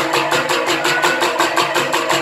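Live percussion music accompanying a Soreng dance: a fast, even beat of struck strokes with sustained pitched tones underneath.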